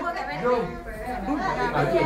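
Indistinct chatter: several people talking at once in a room, with no single voice standing out.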